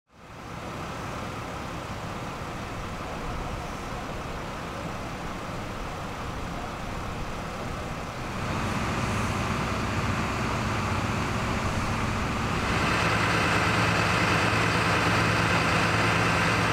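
Vehicle engines idling steadily. The low hum steps up in loudness about halfway through and again a few seconds later.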